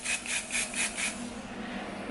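Long hair being combed in quick rasping strokes, about four a second, fading out a little past the first second.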